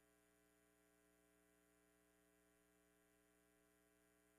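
Near silence: a faint, steady hum with no other sound.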